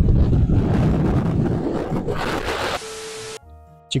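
Strong wind blowing across the microphone, a loud rushing noise. About three seconds in it cuts off suddenly, and quiet background music with a held note follows.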